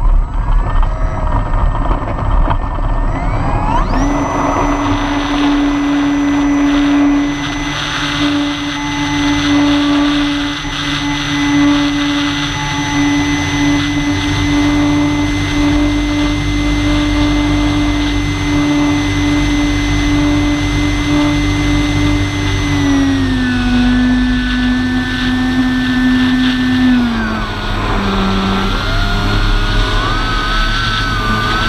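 Radio-controlled model airplane's motor and propeller heard from a camera on board. It throttles up about four seconds in for takeoff and then holds a steady pitch. It eases back twice, after about twenty-three seconds and again near the end, with wind rushing over the microphone.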